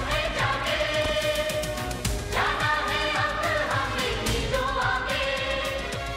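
Hindi film song: singing over a steady percussion beat.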